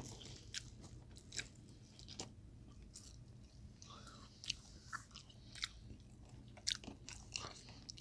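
Faint close-up chewing of a spaghetti meat sauce with ground turkey and shrimp, with short clicks spread through it.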